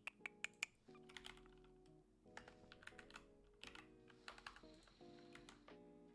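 Typing on a computer keyboard: a run of quick key clicks, the loudest in the first second, then lighter taps scattered through, over faint background music.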